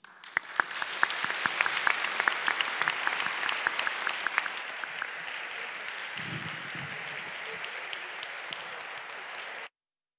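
Audience applauding, starting at once and strongest over the first few seconds, then easing slightly before stopping suddenly near the end.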